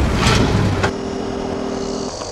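Motor vehicle sound: a loud, noisy rush with a strong low end for about the first second, settling into a steadier hum with a few held tones.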